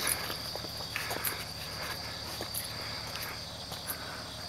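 Insects singing in the grass with a steady high-pitched trill, and the soft irregular crunch of footsteps on a gravel path.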